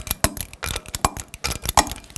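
Torque wrench and socket working a car wheel's lug nuts: a run of sharp metallic clicks and clinks at uneven spacing as the nuts are gone around again to double-check their torque.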